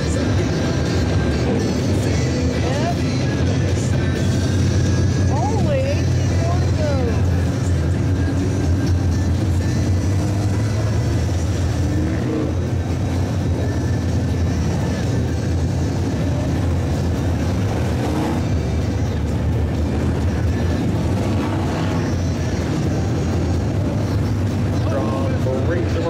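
A field of B-Modified dirt track race cars running laps under green, their engines blending into a loud, steady roar, with cars passing close by the stands.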